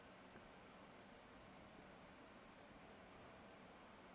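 Faint, scratchy strokes of a dry-erase marker writing words on a whiteboard.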